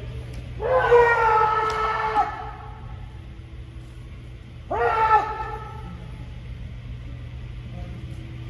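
Kendo fencers' kiai shouts: a long, drawn-out yell of about a second and a half near the start, then a shorter yell about five seconds in, over a steady low hum.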